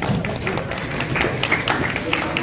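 Sparse, irregular clapping from a few people, about two or three claps a second.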